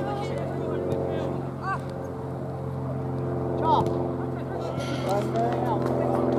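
A steady, low engine drone with several pitched lines, with brief shouts from players on a football pitch over it.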